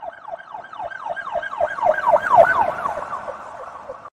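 Emergency-vehicle siren sound effect in fast repeated falling sweeps, about five a second, swelling to its loudest a little past halfway and then fading away.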